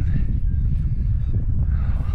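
Wind buffeting the microphone: a loud, steady low rumble.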